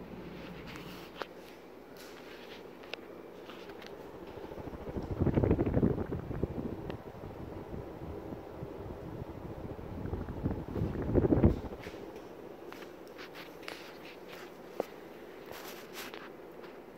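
Casablanca Zephyr ceiling fan running steadily. Its draught buffets the microphone in two loud gusts, about five seconds in and again near eleven seconds, as the microphone is brought close under the spinning blades.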